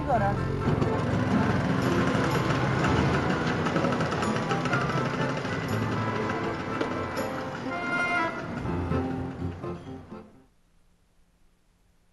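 Film soundtrack of music and voices with a small motorbike engine as it rides off down a lane; everything fades out about ten seconds in, leaving near silence.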